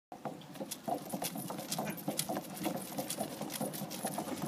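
Quick, irregular footfalls of two people running inside a spinning playground wheel, about four sharp knocks a second over the rumble of the turning drum.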